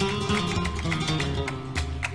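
Flamenco guitar playing: a run of quick plucked notes over low bass notes, with sharp attacks on the strings.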